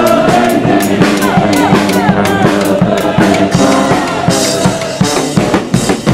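A banda of saxophones, sousaphone and other brass with drums, playing a festive tune at full volume over a steady drum beat. Brighter cymbal-like sound joins from about four seconds in.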